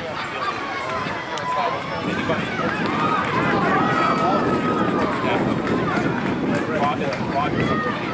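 Indistinct overlapping voices of people at a youth baseball game talking and calling out, no one voice clear, growing louder about two seconds in.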